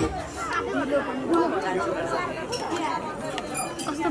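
Several people chattering at once, overlapping voices with no single speaker standing out.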